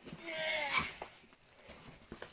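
A cat giving one short meow near the start, then faint rustling and handling noises.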